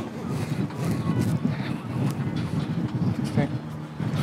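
Indistinct speech: a voice talking too unclearly for any words to be made out.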